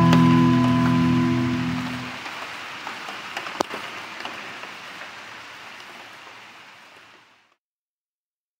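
An acoustic guitar's final chord rings and dies away over about two seconds. A hiss with a few small clicks follows, fading steadily until the sound cuts off to silence shortly before the end.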